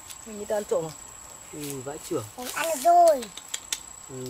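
Voices talking or exclaiming in short bursts, with a thin steady high-pitched tone underneath and a few light clicks near the end.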